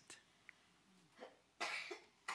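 Mostly quiet room tone, with a short cough near the end.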